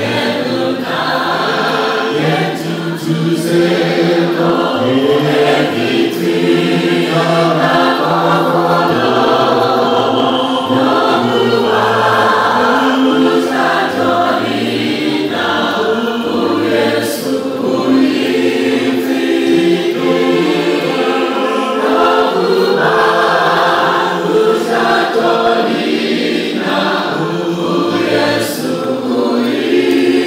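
Many voices singing a hymn together in harmony, with steady held notes that change pitch every second or so.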